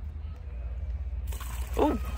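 Liquid fuel pouring from a tipped plastic jerry can into a plastic funnel, a splashing trickle that starts a little over a second in.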